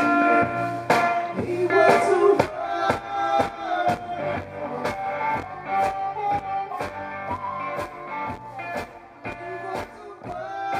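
Live blues band: amplified harmonica playing sustained, bending notes over electric guitar and a steady drum beat. The music gets quieter in the second half.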